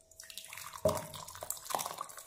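Thick chutney being poured from a steel pan into a glass bowl: a run of wet plops and splatters as it lands, with a louder knock a little before a second in.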